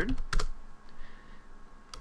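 Computer keyboard typing: a few quick keystrokes near the start, then a pause, then another keystroke near the end.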